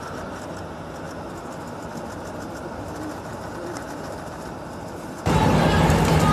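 Steady rumbling background noise from on-location footage, jumping much louder about five seconds in.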